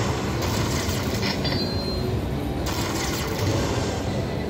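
Lightning Link Tiki Fire slot machine adding up the bonus coin values into its win total: a steady, noisy tally sound while the credit total climbs.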